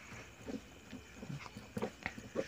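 Faint scratching and tapping of a pen tip on paper as a short sum is written out, in a few short strokes.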